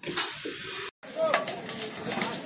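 A person's voice in the background over steady hiss, with the sound cutting out completely for a moment about a second in, where the recording breaks.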